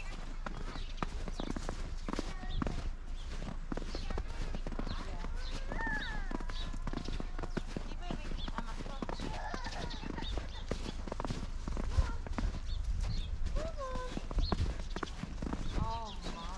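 Footsteps crunching through fresh, deep snow at a steady walking pace, with children's voices calling at a distance.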